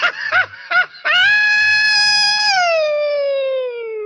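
A few short shouted syllables, then one long, high-pitched comic scream. It holds steady for over a second, then slides slowly down in pitch.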